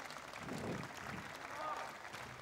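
Spectators' crowd murmur, a steady haze of indistinct voices and chatter.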